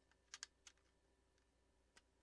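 Near silence: room tone with a few faint clicks, three in quick succession within the first second and one more at the end.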